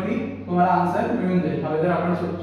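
A man speaking. A steady low hum runs beneath the voice.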